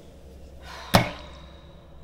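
A single sharp knock of a hard object in a kitchen, about halfway through, with a brief ringing after it.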